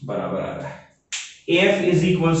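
One sharp click about a second in, between stretches of a man talking.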